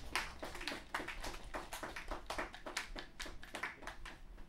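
Sparse applause from a small audience, a few people clapping unevenly, several claps a second, stopping near the end.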